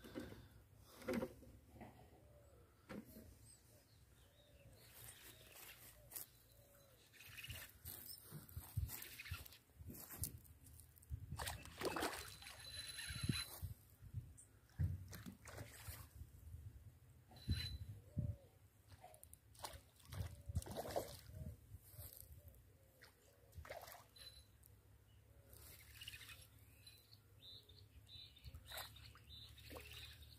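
Faint, scattered clicks and small splashes from a pintado catfish being played on a bent telescopic rod and spinning reel.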